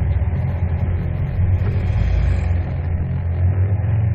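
Steady low engine and road rumble of a moving vehicle travelling along a street.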